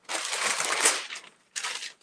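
A sheet of sublimation cover paper rustling and crinkling as it is handled: one long rustle, then a shorter one near the end.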